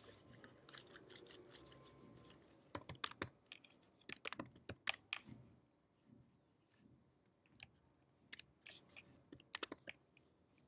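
Faint typing on a computer keyboard: irregular runs of key clicks that stop for a couple of seconds past the middle, then a few more keystrokes near the end.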